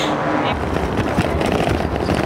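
Wind rushing over the microphone and the rattle of a camera mounted on a moving bicycle, with a deep rumble from about half a second in. The camera is working loose on its mount.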